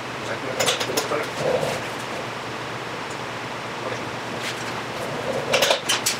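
Hand tools clinking against metal as a motorcycle's rear chain adjuster is worked, in two short bursts: one about half a second in and one near the end. A steady hiss runs underneath.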